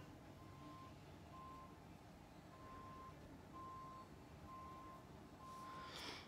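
Faint electronic beeping at one steady pitch, about one short beep a second. A brief burst of hiss comes near the end.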